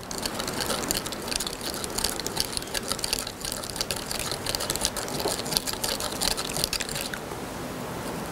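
A plastic spoon stirring baking soda into water in a small plastic cup: rapid clicking and scraping against the cup, stopping about seven seconds in.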